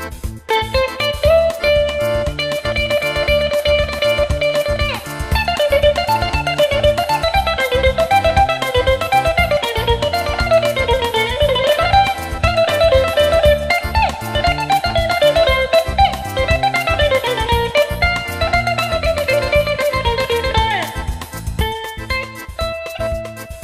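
Greek bouzouki playing an instrumental melody: a held, tremolo-picked note for the first few seconds, then fast runs that climb and fall, over a steady low beat.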